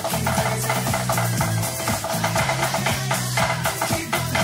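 Pop song with a steady bass line and drum beat, with rapid stick strokes on a marching-snare practice pad played along over it.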